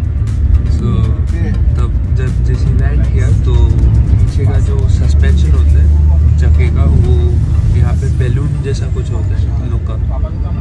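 Steady low rumble of a moving coach's engine and road noise heard from inside the passenger cabin, swelling for a few seconds in the middle.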